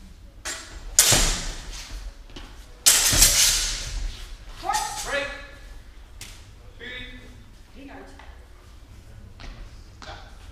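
Two loud sword strikes in a fencing bout, about two seconds apart, each ringing out with a long echo in the sports hall. A few seconds later, voices call out briefly.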